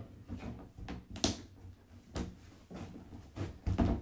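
Plastic cage panels knocking and clicking as they are pressed and handled to seat their pegs in the holes: several irregular sharp knocks, the sharpest a little over a second in.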